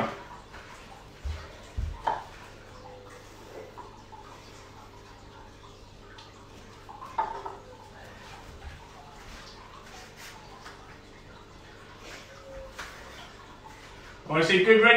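Quiet room tone, broken by a few soft thumps about one and two seconds in, a brief knock near seven seconds and scattered faint ticks.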